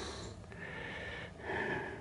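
Faint breathing close to the microphone between spoken phrases, two soft breaths against quiet room tone.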